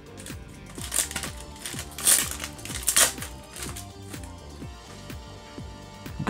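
Crinkling of a Pokémon booster pack's foil wrapper and cards being handled, in a few short crackles with the loudest about one, two and three seconds in, over background music with a steady beat.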